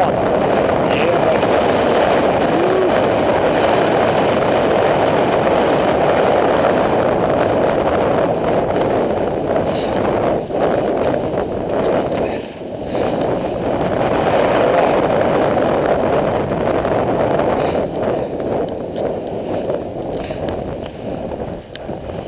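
Steady rushing noise of wind on the microphone and cross-country skis running over snow while gliding down the trail, dipping briefly about halfway through.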